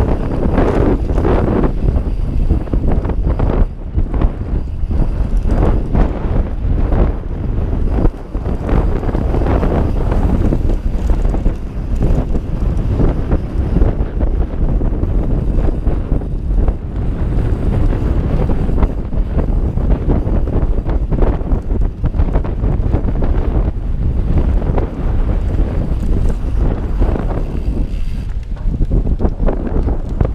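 Loud, constant wind rush on a helmet-mounted GoPro's microphone while mountain biking at speed down a dirt trail. It is mixed with tyre noise and frequent brief knocks and rattles from bumps in the trail.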